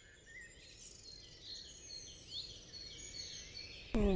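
Faint outdoor ambience with several small birds chirping, growing slowly louder.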